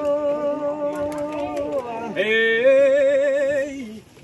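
An unaccompanied voice sings long, drawn-out notes with a slight waver, in the style of a northeastern Brazilian vaqueiro's aboio. One held note gives way to a new one about two seconds in.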